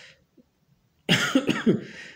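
A man coughing, a short rough burst starting suddenly about a second in after a moment of near silence.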